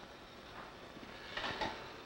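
Quiet pause: low steady hiss and room tone, with a faint soft sound about one and a half seconds in.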